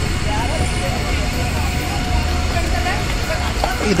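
A steady low rumble of outdoor background noise, with faint voices talking in the background.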